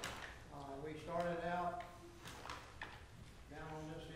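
A man speaking: a sermon-style address at a lectern.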